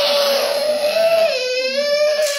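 Toddler crying loudly in one long unbroken wail, its pitch dipping about one and a half seconds in.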